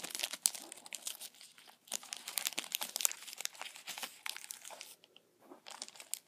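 Plastic Pocky snack pack crinkling as it is opened and handled, a dense run of sharp crackles that dies down about five seconds in.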